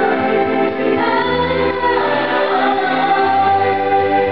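A woman singing a slow melody into a handheld microphone over instrumental accompaniment with a steady bass line, holding long notes in the second half.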